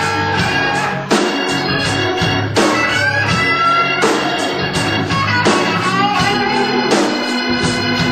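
Live blues band playing an instrumental passage: Hammond organ over electric guitar and drums.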